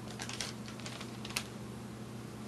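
A few light clicks and rustles of close handling, then one sharper click about one and a half seconds in, over a steady low electrical hum.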